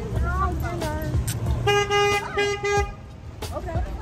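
Car horn honking three quick beeps about two seconds in.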